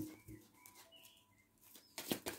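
Near silence, with a few faint, short bird chirps in the first second.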